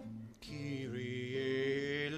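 Church music in a slow, chant-like style: instrumental notes, a brief dip, then from about half a second in, singing with long held notes over the accompaniment.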